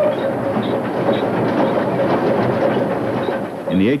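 Steam locomotive running, a steady dense rush of exhaust and wheel noise, with the whistle's held tone dying away early on.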